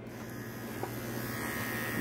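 Electric dog-grooming clippers running with a steady buzz, gradually growing louder as they are brought close to the dog's coat.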